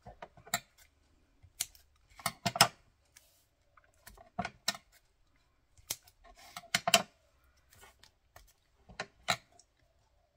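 Paper card pieces being handled and set down on a cutting mat, with scissors being moved: irregular taps, rustles and clicks, the sharpest knocks about two and a half, seven and nine seconds in.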